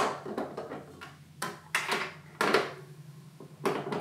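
About five light knocks and clicks as the stainless-steel bowl of a Russell Hobbs stand mixer is seated on its plastic base and the mixer is handled; the motor is not yet running.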